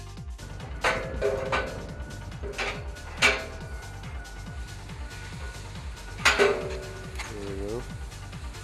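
Electronic background music with a steady beat, over a few sharp metal clanks that ring briefly: a steel platform being fitted onto the hoist carriage. A short squeal comes near the end.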